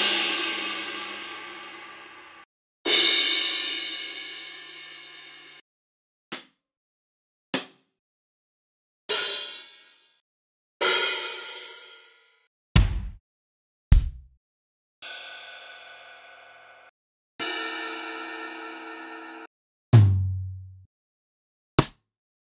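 A run of acoustic drum one-shot samples played one at a time with gaps between: two crash cymbals, each ringing and fading over two to three seconds, two short ticks, two open hi-hats, two deep low thuds, two ride cymbals with a steady ringing tone, then a low-pitched tom hit and a short tick near the end.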